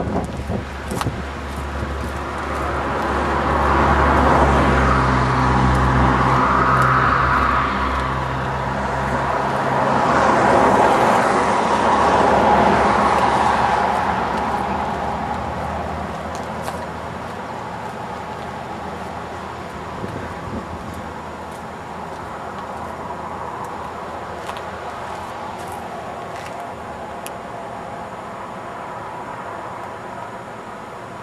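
Car engine and road noise, swelling twice in the first half with a strong low hum, then settling to a lower steady level.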